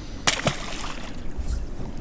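Wind and water around a small boat at sea, with a short sharp sound about a quarter of a second in and a smaller one just after.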